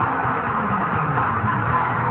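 Electric guitar playing a rock part, full and continuous, with no break.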